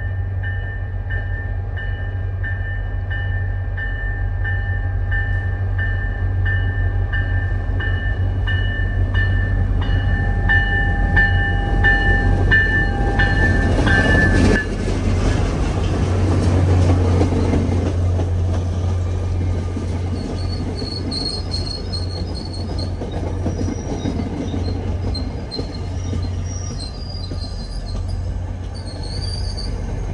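MBTA diesel-hauled commuter train arriving. A bell rings about twice a second over the locomotive's engine as it approaches and stops abruptly as the locomotive passes about halfway through. The locomotive and coaches then roll by, with high wheel squeal in the second half as the train slows.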